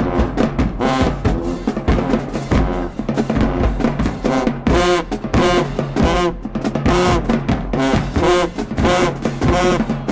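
High school marching band playing: brass horns and woodwinds over bass drums and cymbals, with a steady, driving beat.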